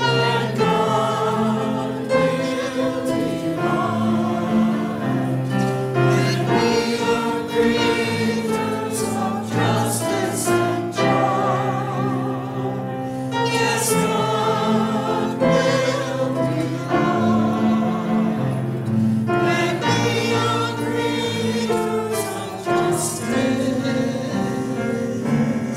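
Church choir and congregation singing a hymn together, long sustained sung lines running on without a break.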